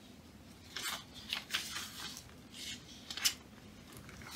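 Sheets of printed paper rustling in a few short brushes as pattern pages are sorted and handled.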